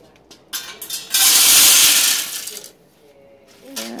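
About 800 grams of wood pellets poured from a metal bowl into the steel fuel chamber of a homemade TLUD gasifier stove. A few clicks come first, then a dense rattling pour of about a second and a half.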